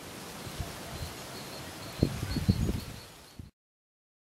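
Outdoor background rustle with faint bird chirps and a few low knocks a couple of seconds in; the sound cuts off abruptly near the end.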